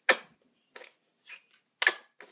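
Sharp plastic clicks and taps from handling a small bottle of acrylic craft paint: a loud click at the start, two or three softer ones, and another loud click near the end.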